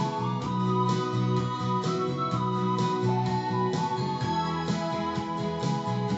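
Instrumental backing music with sustained chords over a steady bass line, with no singing.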